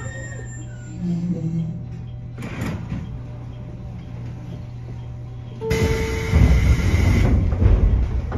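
Passenger doors of a stopped JR Kyushu 813 series electric train opening about six seconds in: a sudden loud rush of noise with a short tone, over the train's steady low hum.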